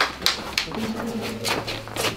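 Room sounds of a basketball team in a small locker room between talk and chant: a couple of sharp taps near the start, faint low voices, and a steady low hum.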